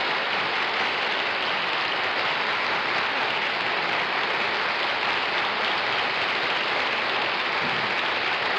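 Studio audience applauding, a steady even clapping that holds the same level.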